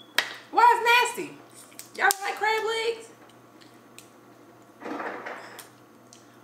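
A voice making two drawn-out wordless sounds, the first about half a second in and the second about two seconds in, with a sharp snap near two seconds as crab legs are pulled apart and a soft rustle near five seconds.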